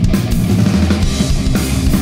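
Punk rock band playing live: distorted electric guitars, bass guitar and a drum kit in an instrumental passage with no vocals.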